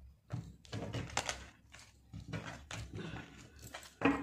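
A tarot deck being shuffled by hand, with soft, irregular thunks and taps of the cards against each other and the table.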